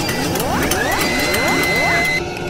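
Logo-animation sound design: rapid mechanical clicks and clanks under several quick rising sweeps. A steady high tone comes in about a second in and is held.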